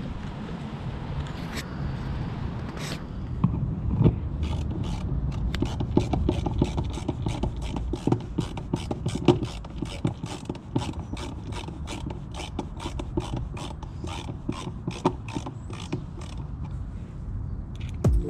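A hand screwdriver driving screws to fasten a fishfinder transducer mount to the underside of a plastic kayak hull, giving a steady clicking about three times a second, over low handling noise.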